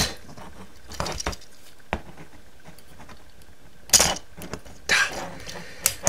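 Hard plastic parts of a Transformers Kingdom Inferno action figure clicking and rattling as the figure is handled mid-transformation, its fists being flipped around. A handful of scattered clicks, the loudest about four seconds in.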